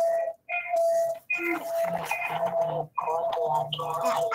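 Background sound picked up by a participant's open microphone on a video call: a repeating electronic tune of steady tones, in short segments about half a second long, with voice-like sound mixed in.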